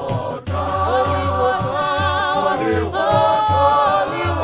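A church choir singing a gospel song in several-part harmony, with a deep drum beating a steady pulse about two to three times a second underneath. The sound drops out briefly about half a second in.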